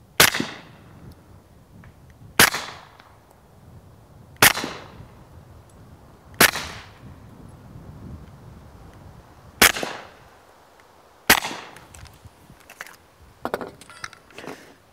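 Six suppressed shots from a Smith & Wesson M&P45 .45 ACP pistol fitted with an AAC Tyrant 45 suppressor, fired slowly about two seconds apart. Each shot is a sharp, suppressed report that dies away quickly.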